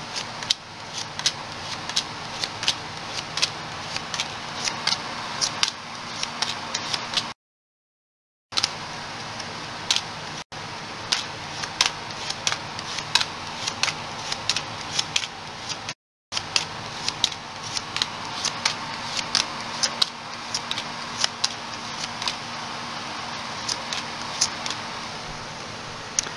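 Tarot cards being shuffled by hand: an irregular run of sharp card clicks and snaps over the steady hum of a room air conditioner. The sound drops out completely twice, for about a second each time.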